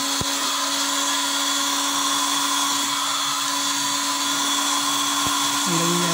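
Hot-air rework station blowing steadily with a constant whine, heating the EEPROM chip on a set-top box circuit board to desolder it.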